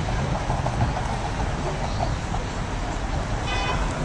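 Steady street traffic noise at a busy city intersection: a continuous rumble of passing vehicles, with a brief high-pitched tone near the end.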